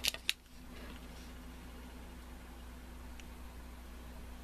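A few sharp clicks of a card-and-plastic blister pack being handled and turned over in the hands, then a steady low hum of room noise.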